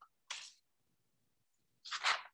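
Near silence broken by two short hissy noises, high in pitch: a faint one about a third of a second in and a louder one near the end.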